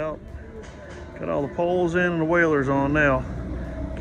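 A man speaking, over a steady low rumble.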